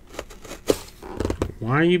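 A few light clicks and rustles from hands on a cardboard trading-card box, then a man's voice starts speaking in a drawn-out, rising and falling tone near the end.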